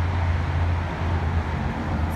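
Steady low rumble with a hiss above it, the sound of motor vehicles running.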